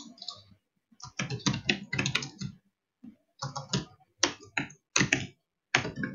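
Typing on a computer keyboard: bursts of rapid keystrokes with short pauses between, the keys erasing a typed command.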